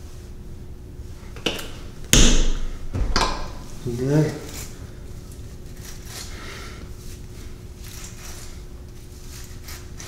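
A few sharp knocks and clatters of plastic toiletry containers, such as a hair gel jar, being handled and set down on a bathroom counter, the loudest about two seconds in. A brief hum of voice follows, over a faint steady hum in a small, echoing bathroom.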